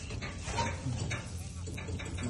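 A low, steady engine hum runs under short, faint bursts of voices, with light rustling as hands stir and lift harvested rice grain in a sack.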